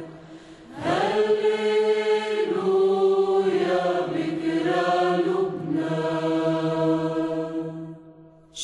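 Chanted vocal music: a voice enters about a second in and holds long, slowly moving notes over a steady low drone, then fades away at the end.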